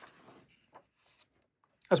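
A magazine page being turned by hand: a short paper rustle and swish in the first half-second, then a faint tick.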